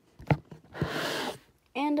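Phone handling noise: a sharp knock, a lighter tap, then a brief rustling hiss as the phone moves close over the paper.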